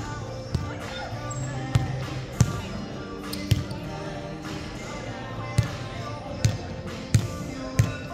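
A volleyball thudding off hands and arms and bouncing on a hardwood gym floor, about eight sharp, echoing hits spaced unevenly. Music and voices carry through the hall underneath.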